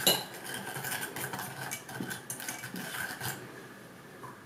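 A whisk beating a thin milk-and-cocoa sauce mixture in a small stainless steel saucepan: quick clicking and scraping of the wires against the metal pan. The clicking eases off near the end.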